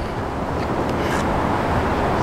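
Steady rushing noise of wind buffeting the microphone.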